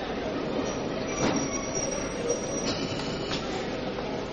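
Train running on the rails, a steady rumbling clatter, with a thin high wheel squeal from just under a second in to about two and a half seconds.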